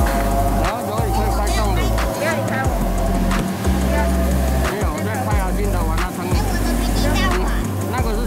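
Background music with sustained bass notes that change about once a second, and a melody above them.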